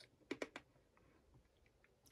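Near silence: quiet room tone with a few faint clicks about half a second in.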